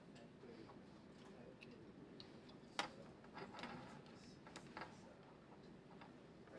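Near-silent room tone with scattered light clicks and taps from a laptop being worked at a lectern, the sharpest click about three seconds in.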